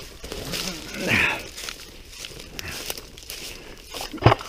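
Footsteps through dry leaf litter, the leaves crackling and rustling underfoot as someone walks. A short voice-like sound, such as a grunt or breath, comes about a second in.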